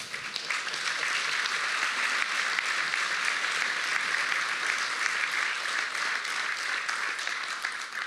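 Audience applauding, a steady patter of many hands clapping that dies away near the end.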